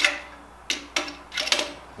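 Metal tools clinking against a steel tool rack as a hand handles a tape measure hung on it: a handful of sharp, lightly ringing clicks, the loudest at the start and about a second and a half in.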